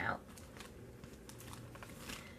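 Faint light clicks and rustles of empty cosmetic bottles and packaging being handled and picked up, following one spoken word at the start.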